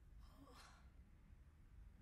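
A woman's faint breathy sigh, about half a second in, followed by near silence: room tone.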